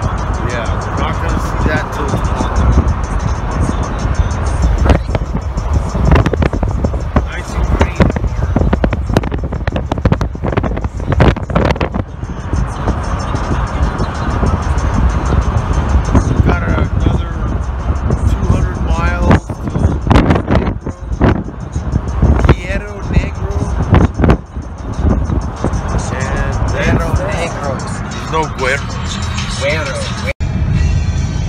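Road and wind noise of a car at highway speed: a steady low rumble broken by frequent short gusts. A voice or music comes through faintly at times.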